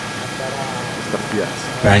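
A pause in a man's speech through a microphone and sound system: a steady background hum and hiss fills the gap, with a few faint voice sounds about a second in and his speech coming back just before the end.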